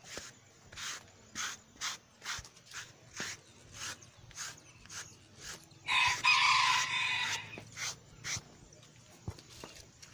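A rubber curry brush scrubs a horse's coat in quick strokes, about two a second. About six seconds in, a rooster crows for about a second and a half, louder than the brushing.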